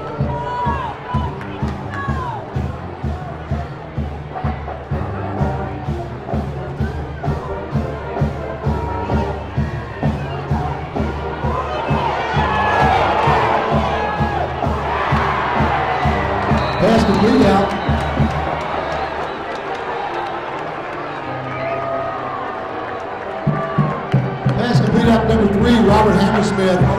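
Football stadium crowd with a band playing in the stands: drums keep a steady beat under sustained low tones. The crowd's cheering swells in the middle as a play runs. The band drops out for a few seconds and picks up again near the end.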